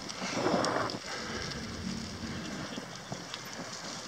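Outdoor ambience with a short rush of noise about a quarter second in, then a low, even hiss with a few faint clicks.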